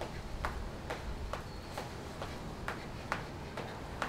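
Feet landing from star jumps (jumping jacks), a regular light thud a little over twice a second, over a low steady hum.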